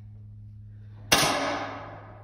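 A single target-rifle shot about a second in, sharp and loud, with the range hall's echo dying away over most of a second.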